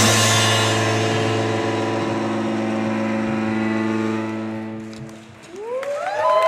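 A rock band's final chord struck with a drum hit and left ringing on guitar and bass, fading out slowly over about five seconds. Near the end the audience starts cheering and whooping.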